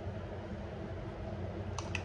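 Thick, hot chickpea gravy sliding off a plate and plopping softly onto broken samosas, over a steady low room hum, with a couple of faint clicks near the end.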